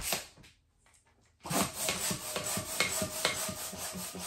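Latex modelling balloons being handled, with a short puff of noise at the start. From about a second and a half in there is a dense, scratchy rubbing of latex on latex with small knocks.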